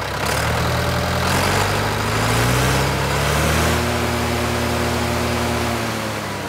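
Volvo BM T 650 tractor's four-cylinder diesel engine being revved by hand at the injection pump's throttle linkage. The engine speed climbs over the first three seconds or so, holds steady, and eases down a little near the end.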